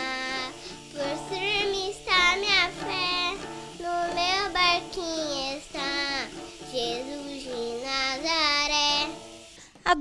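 A young girl singing a song, her voice gliding up and down in phrases over a backing of steady held low notes that change every half second or so. The singing stops shortly before the end.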